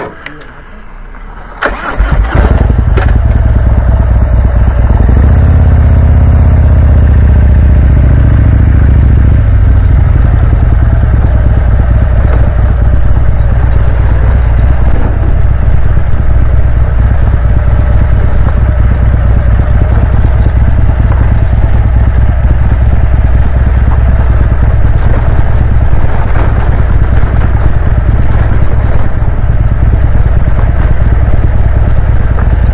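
Harley-Davidson V-twin touring motorcycle engine started about two seconds in, running heavier for several seconds as the bike pulls away, then running steadily while riding down a gravel road, heard through a helmet-mounted mic.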